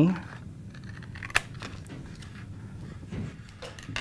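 Scissors cutting through folded poster board along a score line: quiet snipping, with one sharp click about a second and a half in.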